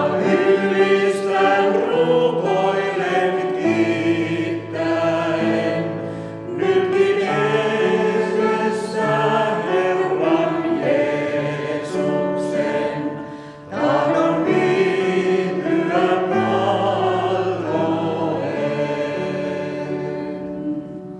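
A mixed vocal quartet of two men and two women singing a hymn together in parts, in sustained phrases with brief breaks for breath about six and fourteen seconds in.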